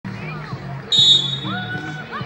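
A referee's whistle gives one short, shrill blast about a second in, starting play at the centre pass of a field hockey match. Background music and voices run underneath.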